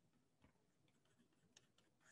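Near silence: room tone, with two faint ticks.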